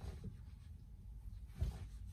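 Low steady rumble of a car cabin, with a brief soft thump about one and a half seconds in.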